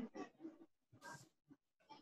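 Near silence on an online call, with a few faint, brief noises and a short hiss about a second in.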